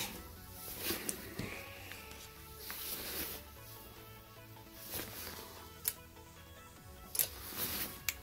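Faint background music, with a few soft clicks and rustles of hands handling things on a workbench.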